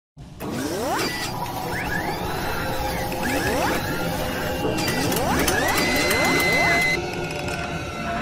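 Intro-sting sound effects of mechanical whirring and clicking, with repeated rising whines like robot servos; the last whine levels off into a held high tone that cuts off suddenly about seven seconds in.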